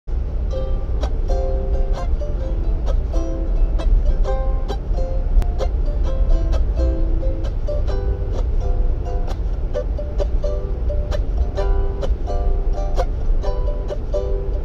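Ukulele picked in a gentle melodic pattern, about two notes a second, over the steady low rumble of a moving passenger train.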